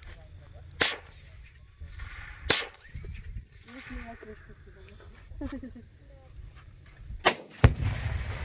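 A rifle shot near the end, followed about a third of a second later by the bang of the exploding target it hits. Two other single sharp cracks come earlier, about one and two and a half seconds in.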